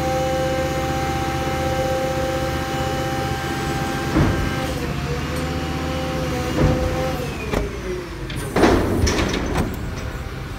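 Front-lift refuse truck running its hydraulics with the engine held at raised revs while the lifted skip empties into the hopper, giving a steady whine. There is a clunk about four seconds in and another at about six and a half seconds. The pitch then slides down, and a burst of banging and clatter follows near the end as the hopper lid closes.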